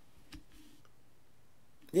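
A single soft click, then a brief faint hiss, in an otherwise quiet pause; a woman's speech starts near the end.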